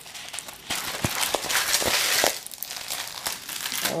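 A folded diamond painting canvas with its clear plastic protective film being unfolded by hand, the film crinkling and crackling. The crinkling is loudest from about one to two seconds in, then eases.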